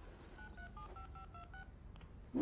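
Touch-tone keypad dialing, faint: a quick run of about eight short beeps, each a pair of tones at a different pitch.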